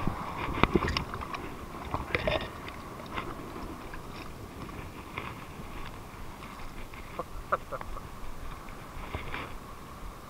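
Scattered light clicks and scrapes from hands and gear handling a freshly caught leopard shark on the rocks, over a steady background hiss.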